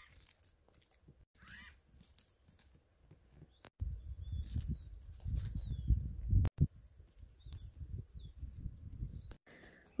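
Outdoor ambience: a low, uneven rumble of wind on the microphone from about four seconds in, with a few faint bird chirps over it. The sound drops out briefly several times where the recording is cut.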